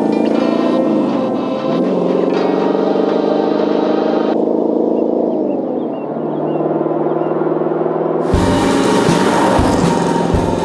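Background music of sustained chords that change every few seconds, with a heavier beat coming in about eight seconds in.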